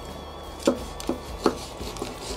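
A knife slicing a frenched rack of lamb between the rib bones into lollipop chops. The blade knocks onto a wooden cutting board three times, about 0.4 s apart.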